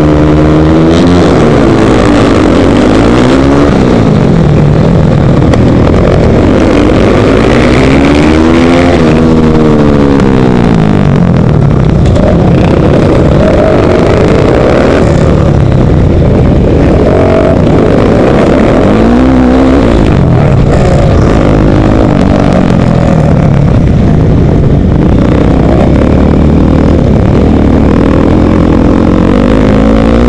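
KTM 450 SMR supermoto's single-cylinder four-stroke engine, heard from the rider's helmet: held at steady high revs on the start line, then launched about a second in and accelerating hard through the gears, its revs rising and falling again and again with shifts and corners. Other race bikes' engines run close alongside.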